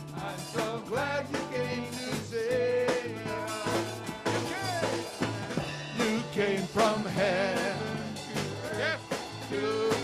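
Live church worship band playing a praise song: lead and backing vocals over strummed acoustic guitars, electric guitar, bass and a drum kit keeping a steady beat.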